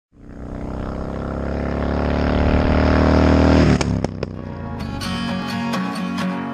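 V-twin engine of a 2007 Kawasaki Vulcan Mean Streak 1600 motorcycle, getting steadily louder and rising slightly in pitch, then cut off abruptly a little under four seconds in. A few clicks follow, then rock music with guitar begins near the end.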